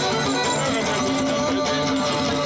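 Live Cretan folk music: a bowed Cretan lyra over plucked lute accompaniment, playing steadily with sustained notes over a low drone.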